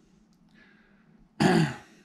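A man clearing his throat once, a short loud burst about one and a half seconds in.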